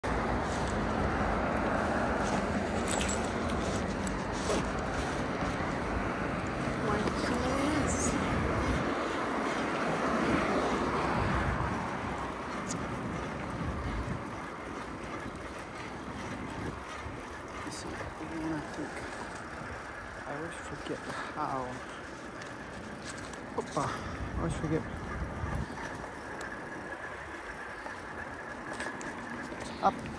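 A car going by and steady wind and road noise from a moving bicycle, loudest for about the first twelve seconds, then quieter with a few scattered knocks.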